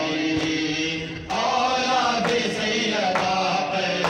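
Group of men chanting a Shia mourning lament (noha) in unison, with sharp chest-beating slaps (matam) keeping time about once a second. The voices drop briefly just after a second in, then come back louder.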